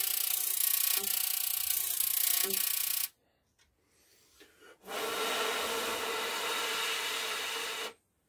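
High-voltage supply driving a plasma discharge through a tube, giving a loud raspy buzz with a few steady tones. It cuts off suddenly about three seconds in, returns about two seconds later with a steadier hum under the buzz, and cuts off again at the end.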